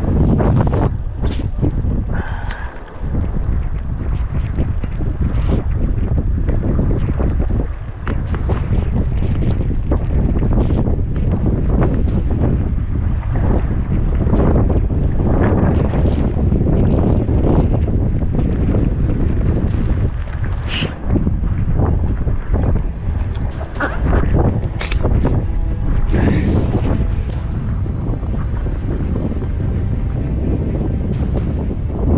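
Wind buffeting the microphone, with background music that comes in about eight seconds in.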